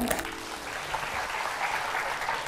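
Studio audience applauding over soft background music.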